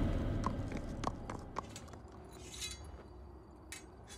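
A horse's hooves clopping a few times, sparse and faint, with music dying away in the first second or two.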